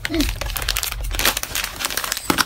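Plastic and foil snack wrappers crinkling in irregular bursts as a toddler's hands rummage through them, with a brief child's vocal sound just after the start.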